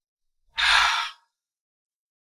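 A woman's single sigh, one breathy exhale lasting well under a second, starting about half a second in.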